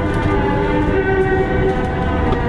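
Steady low rumble in the cabin of an Airbus A330-300 rolling out on the runway just after touchdown, from its wheels and engines. Instrumental Christmas music plays over the cabin speakers, its held notes changing every half second or so.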